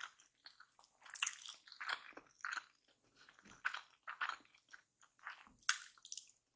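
Close-miked chewing of a mouthful of kimchi fried rice: irregular short wet, crunchy mouth sounds every half second or so, with a louder bite near the end as the next spoonful goes in.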